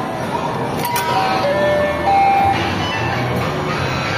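Coin-operated kiddie carousel ride starting up: a click from the coin slot just under a second in, then the ride's electronic tune begins with simple held notes, a steady bass beat joining later.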